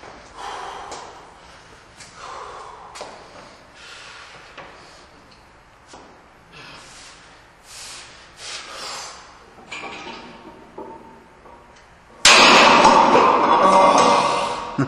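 Heavily loaded barbell set down hard onto a power rack's pins after a rack deadlift, about twelve seconds in: a sudden loud metal slam and clatter of plates that rings on for about two seconds. Before it come quieter short sounds of the lifter setting up and pulling.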